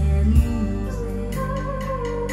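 A recorded song played back through the amplifier and loudspeakers from a Sony MDS-JA555ES MiniDisc deck: a singing voice over instruments and a steady bass, with a few light percussion strikes.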